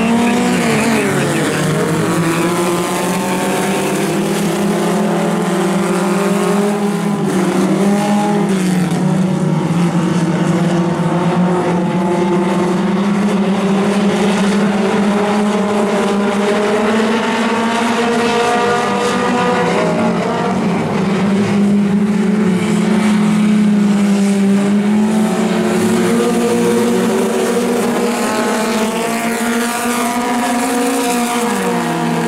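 A pack of mini stock race cars on a dirt oval, several engines running hard at once. Their overlapping notes rise and fall in pitch as the cars lift for the turns and accelerate out of them.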